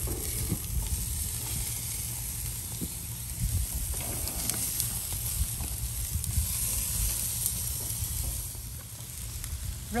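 Ribeye steaks sizzling on a hot gas grill, under a low steady rumble, with a few faint clicks of metal tongs against the grates.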